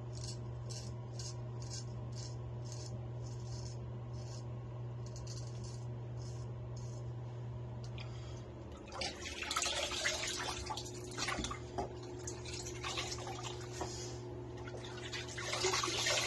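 Naked Armor Erec straight razor scraping through beard stubble in quick short strokes, two or three a second. About halfway through this gives way to tap water running and splashing into a sink as the face is rinsed.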